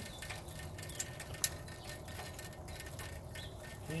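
Quiet outdoor background with faint scattered ticks and one sharp click about a second and a half in.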